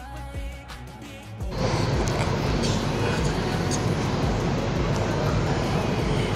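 Music: a quiet melodic passage, then about a second and a half in a much louder, dense section comes in suddenly and holds steady.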